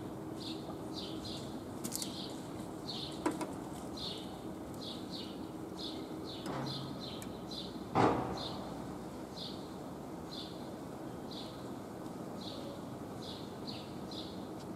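A small bird chirping over and over, short high chirps about twice a second with a few brief pauses, over a steady low hum. A single sharp knock about eight seconds in is the loudest sound, with a fainter click about three seconds in.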